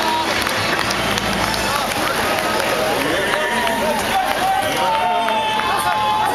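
Crowd of many people talking and calling out at once, a dense steady babble, with held musical notes coming in near the end.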